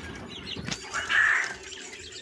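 Young quail peeping with a few short, high, falling chirps, and a brief rustling flurry about a second in, the loudest sound here.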